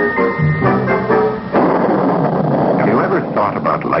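Title music with held chords, cut off about a second and a half in by a sudden thunder sound effect: a dense rumbling crash with a crackling, rain-like hiss.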